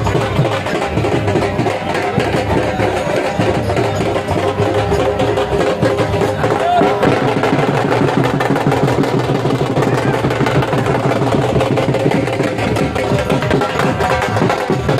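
Loud drum-led folk music, with many quick drum strokes, over the voices of a crowd.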